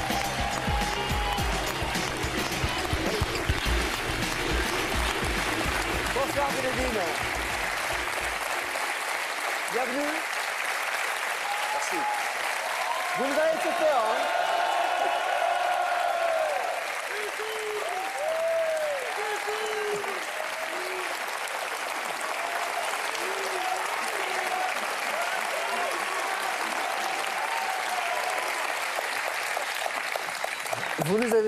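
A studio audience applauding and cheering, with a beat-heavy music track underneath for the first nine seconds or so; the music then stops while the applause carries on, with scattered voices over it.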